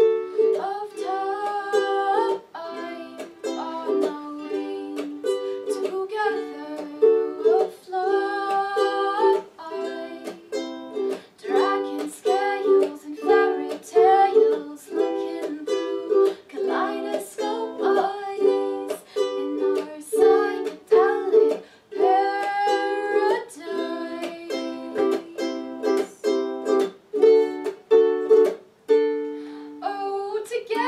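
Ukulele strummed in steady chords, played live in a small room.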